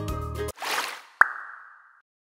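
Background children's music stops abruptly about half a second in, followed by a brief rushing noise and then a single sharp pop sound effect that rings and fades away.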